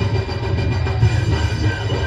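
Heavy metal band playing live: electric guitar, bass and drums in a dense, loud wall of sound with a heavy low end.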